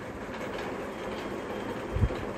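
Steady background noise, with a short low thump near the end.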